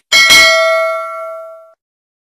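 A notification-bell 'ding' sound effect for a clicked subscribe bell: one sharp chime struck just after the start, ringing with several steady tones that fade and then cut off about a second and three-quarters in.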